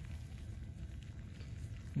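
Faint crackle and rustle of fingers rubbing soil off a small dug-up metal-detecting find, over a steady low rumble.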